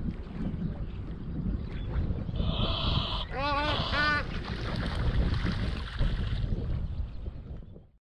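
Wind rumbling on the microphone throughout. About two and a half seconds in a short steady high tone sounds, then two quick pitched vocal calls, and the sound fades out at the end.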